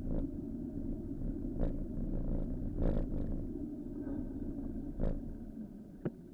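Steady low rumble of street traffic and wind on a bicycle-mounted camera's microphone while riding, with four short, louder bursts of noise.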